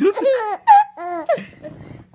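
Baby laughing in a few short, high-pitched bursts, dying away over the last half second.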